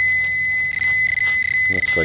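Metal-detecting pinpointer probe sounding a steady high-pitched tone against a dug plug of soil, signalling a metal target in the bottom of the plug.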